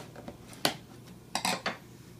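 A single sharp snap about half a second in, then a quick clatter of three or four clicks near the end: a knife slitting the packing-tape seal on a cardboard box, then the metal knife set down on a wooden table.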